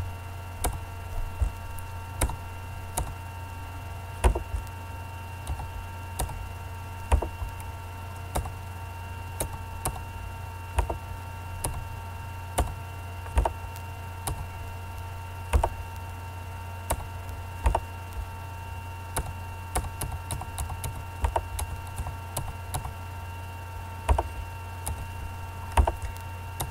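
Irregular clicks of a computer mouse and keyboard, about one a second and closer together around twenty seconds in, as tracks are deleted one at a time. A steady low electrical hum with faint steady whine tones runs underneath.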